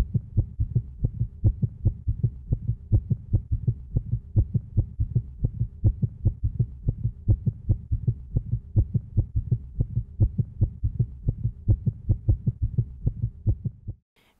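Heartbeat sound, low and pulsing fast and regularly at about four to five beats a second, cutting off at the end.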